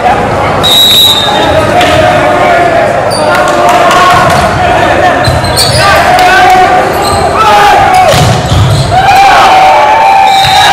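Indoor volleyball rally in a gym: a referee's whistle sounds briefly about a second in, then the ball is struck several times and shoes squeak on the hardwood, under steady shouting from players and crowd.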